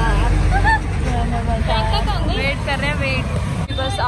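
People's voices talking and laughing over a steady low rumble of road traffic. The sound changes abruptly near the end.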